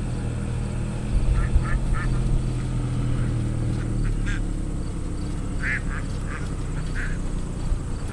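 Ducks quacking in short runs of three or four quacks, several times.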